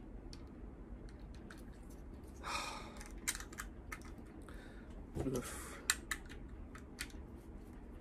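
Scattered light clicks and taps of hard plastic being handled as the battery cover of a folding digital kitchen scale is fitted and turned to close, with a brief rustle about two and a half seconds in.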